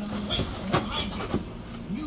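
A dog tearing and chewing at a cardboard box with its head in a hole it has ripped in the lid: scattered crackles and rips of cardboard, the sharpest about three quarters of a second in.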